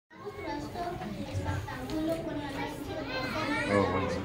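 Children's voices, several talking at once.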